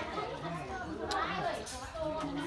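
Faint background chatter of voices nearby, quieter than the close speech either side, with a couple of light clicks in the middle.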